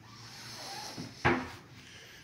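A built-in wardrobe door being shut: a small click, then a single sharp knock as the door closes against the frame.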